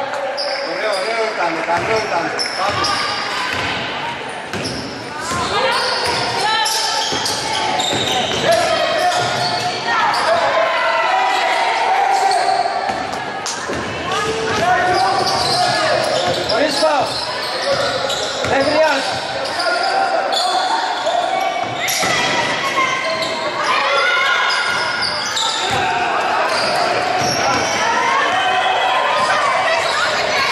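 Basketball bouncing on a hardwood gym floor as players dribble, with voices calling and talking throughout in a reverberant hall.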